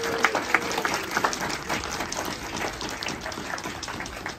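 A small crowd applauding outdoors, the clapping thinning out toward the end. A held musical note fades out just after the start.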